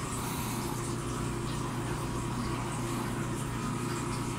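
Steady low mechanical hum with a faint higher whine, unchanged throughout.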